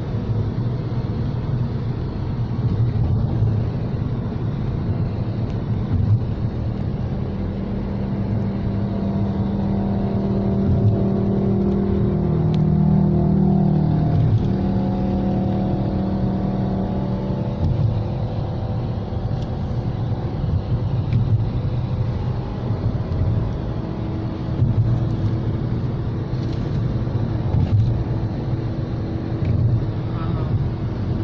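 Car interior road noise: steady tyre and engine rumble while driving at traffic speed. In the middle a pitched engine hum swells for several seconds, then fades.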